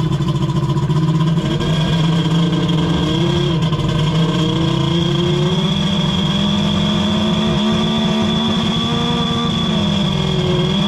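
Two-stroke jet ski engine (a Kawasaki 1100 triple) running at a fast idle just after starting. The pitch holds steady with small rises and dips in revs and a thin high whine throughout. The engine is being tuned for a rich low-speed mixture, its low-speed carburettor screws set half a turn out.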